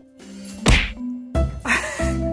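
A single sharp whack-like hit about two-thirds of a second in, during a short break in the background music. The music comes back in a little past halfway.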